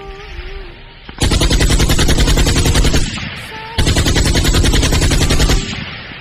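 Rapid automatic machine-gun fire in two long bursts of about two seconds each, the first starting about a second in and the second near four seconds. A sung note from a song carries on underneath and fills the gaps between the bursts.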